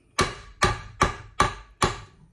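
Five sharp, evenly spaced raps on a stainless steel stand-mixer bowl, about two and a half a second, each with a short metallic ring, as batter is knocked loose.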